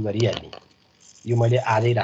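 Speech: a man lecturing, with a short pause about half a second in.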